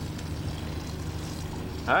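Motorboat engine idling with a steady low hum. A voice starts right at the end.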